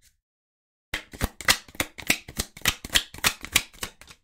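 Oracle card deck being shuffled by hand: a quick run of card strokes, about five a second, starting about a second in after a brief gap.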